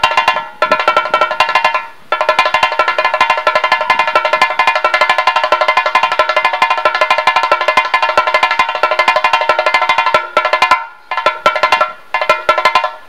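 Chenda, the Kerala cylindrical drum, played with a curved stick in fast, continuous rolls of strokes. The taut head gives a sharp, ringing, pitched tone. The rolls break off briefly just after the start, again about two seconds in, and again shortly before the end.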